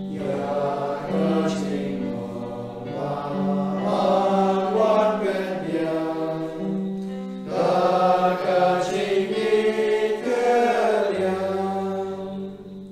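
A slow hymn: voices singing a bending melody over long held low instrumental notes that change every few seconds.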